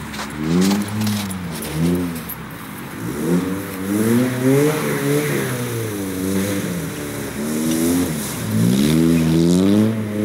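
Nissan Sunny rally car's engine accelerating hard through the gears, its pitch climbing and dropping back at each shift. It grows louder as the car approaches and passes.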